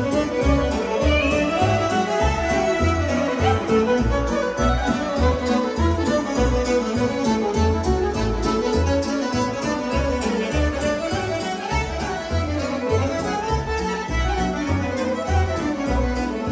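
Live band playing Maramureș folk dance music: violin and saxophone carry a lively melody over a steady bass beat.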